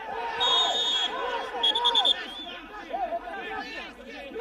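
Referee's whistle blown for a foul: one long blast about half a second in, then a quick run of four short pips, over many men shouting over one another.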